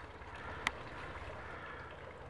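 Faint, steady outdoor background noise with a single short click about two-thirds of a second in.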